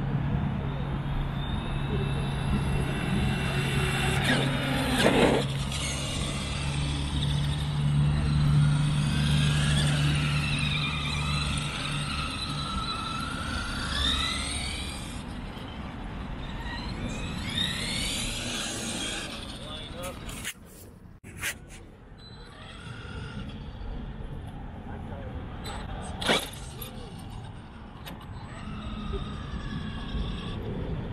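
Electric RC trucks driving on a track, their motors whining up and down in pitch as they speed up and slow. There is a sharp knock about five seconds in, a short drop-out a little after twenty seconds, and another sharp knock near the end.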